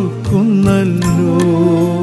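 Malayalam devotional song: a solo voice sings a slow, held melody that bends in pitch, over a steady drone accompaniment.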